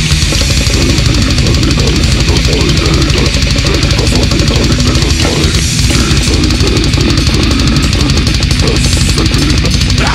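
Extreme metal music: heavily distorted guitars and fast, dense drumming with vocals over them, playing without a break.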